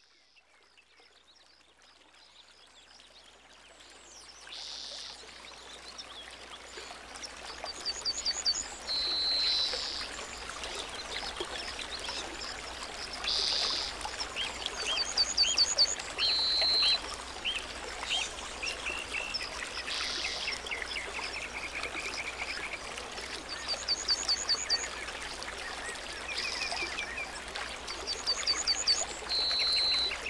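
Flowing stream water rushing steadily over rocks, with birds calling in short runs of quick chirps every few seconds. The sound fades in over the first few seconds.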